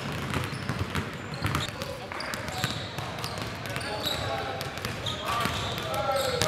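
Several basketballs being dribbled on a hardwood gym floor: a fast, irregular patter of bounces.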